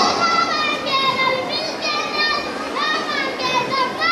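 Several high-pitched voices speaking or calling out, like children's voices, in a large hall.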